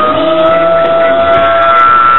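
Live rock band playing, with one long sustained note held over the band. The note creeps slightly upward in pitch.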